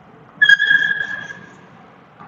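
A short, high-pitched ringing tone that starts suddenly with a click less than half a second in and fades away over about a second.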